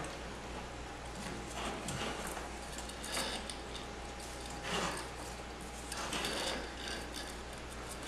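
Faint handling sounds of thin 26-gauge enamelled copper wire being wrapped around wooden golf-tee pegs on a coil-winding jig: soft scrapes and ticks about every second and a half, over a low steady hum.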